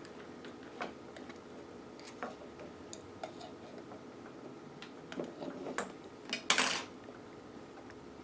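Metal tweezers clicking and tapping against a small glass globe and the glass gems inside it, in scattered light ticks, with a brief louder scrape about six and a half seconds in.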